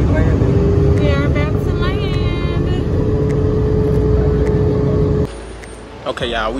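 Loud, steady drone of a jet airliner's engines heard from inside the cabin in flight, with a steady hum running through it. It cuts off suddenly about five seconds in.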